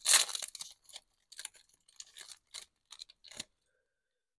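Foil wrapper of a Topps baseball card pack being torn open: a loud tearing crinkle in the first moment, then a few short, soft crinkles as the wrapper is pulled away.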